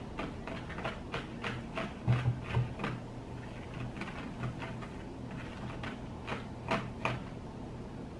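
Spoons clicking and scraping irregularly against plastic bowls as an ice cream mixture is stirred, over a low steady hum.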